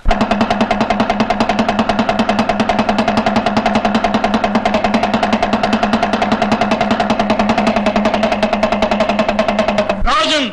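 A small hand drum, a dindima, beaten in a fast, even roll. The roll starts and stops abruptly.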